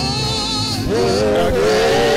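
A man singing a slow gospel worship song into a microphone, holding long notes with vibrato, with musical accompaniment. A higher wavering note in the first second gives way to lower held notes from about a second in.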